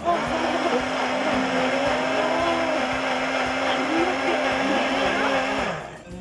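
Electric countertop blender running at full speed, puréeing watermelon flesh into juice, with a steady motor hum under the churning. It is switched off shortly before the end.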